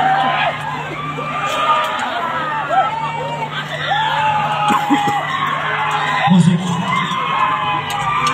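A large group of men whooping and yelling together, many long rising-and-falling calls overlapping one another, over a steady low hum that shifts up slightly near the end.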